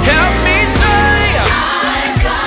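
Contemporary gospel song: a solo voice bending and wavering through runs over a steady bass and band accompaniment.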